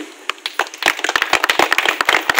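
Scattered hand clapping from a small audience: a string of sharp, irregular claps beginning about a third of a second in.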